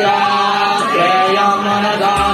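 Hindu ritual mantras being chanted, the voices holding long, slightly bending melodic notes without a break.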